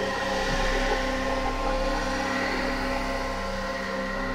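Ambient electronic music: a bed of held drone tones with a hiss of noise over them. The deepest bass drone drops away about halfway through.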